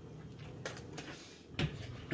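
Quiet room tone with two faint knocks, one about halfway through and one near the end.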